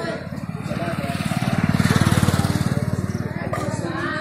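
A small engine vehicle passing close by: its rapid, even engine pulses grow louder to a peak about halfway through, then fade.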